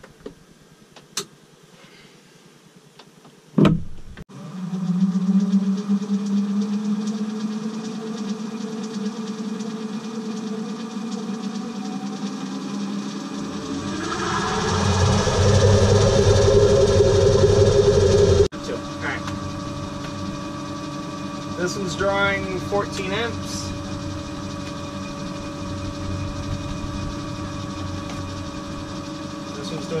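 Electric inboard boat motor switched on with a thump a few seconds in, then running with a steady hum. It speeds up and gets louder partway through, then drops suddenly to a lower, steady running hum. This is its test run after a replacement part was fitted.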